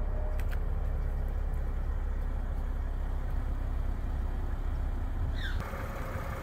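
BMW M440i's turbocharged inline-six idling: a steady low rumble.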